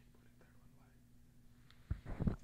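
Quiet room tone from the commentary microphone: a faint steady hum with faint murmured voices. A sudden thump comes near the end.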